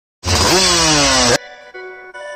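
Race-tuned Yamaha Calimatic 175 two-stroke single-cylinder engine revved once: the pitch rises sharply and then falls slowly. It cuts off suddenly about a second and a half in, and intro music follows.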